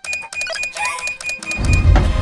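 Cartoon sound effects over background music: a fast ringing rattle of clicks over a steady high tone, then a loud low rumble that builds from about one and a half seconds in.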